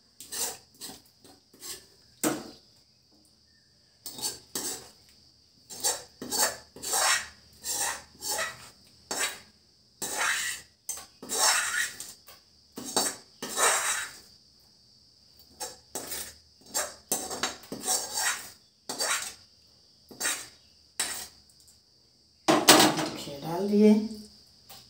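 Metal slotted spoon scraping and clinking against aluminium pots in a long string of short strokes, as cooked rice is scooped out and layered over the mutton for biryani. A louder clatter near the end.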